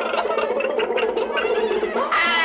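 Instrumental film background music with held, sustained tones.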